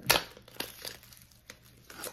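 A small paperboard cosmetics box being handled and opened: one sharp crackle of card at the start, then a few soft clicks and scrapes as the flap is worked.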